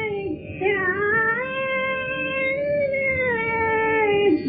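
A woman singing a Hindustani raga in long held notes that slide between pitches: a brief dip about half a second in, a higher note held through the middle, then a glide back down to the first pitch near the end.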